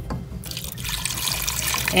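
Chicken stock poured from a glass measuring cup into a pot of diced potatoes, the stream starting about half a second in and getting louder.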